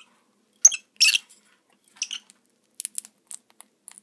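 Lovebirds pecking and nibbling at a bowl of sprouts and seed: a scatter of short, sharp clicks and crunches at irregular intervals, the loudest about a second in.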